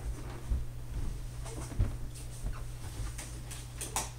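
Scattered faint clicks and knocks over a steady low hum, with a sharper click near the end.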